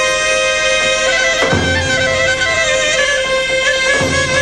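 Two Greek folk clarinets playing a melody in unison over a long held note, with a deep daouli drum beat about one and a half seconds in.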